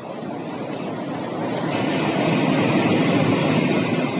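ALCO WDM3A diesel locomotive approaching and running past close by with its passenger train. The engine and wheel rumble grow steadily louder, and about a second and a half in a sharp hiss of wheels on rail comes in as the locomotive draws level.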